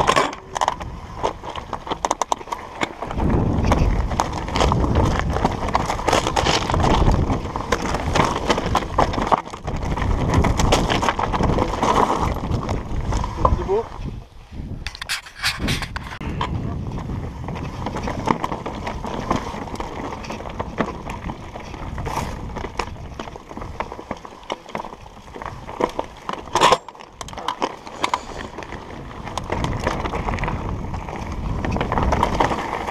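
Trek Slash 8 full-suspension mountain bike ridden over rocky singletrack: tyres rolling over rock and loose stones, with constant clicks and rattles from the bike over the bumps. The sound dips briefly about halfway through.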